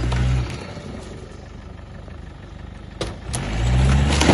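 Land Rover Discovery engine revving under load as it pushes into an old caravan, dropping back to a low run for about two and a half seconds. Two sharp cracks come about three seconds in, then the revs rise again.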